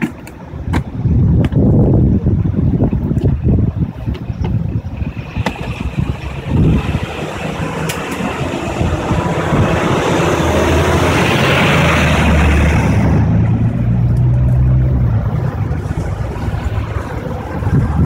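Street traffic noise with wind buffeting the phone's microphone and a few handling clicks early on; a passing vehicle swells and fades over several seconds in the middle.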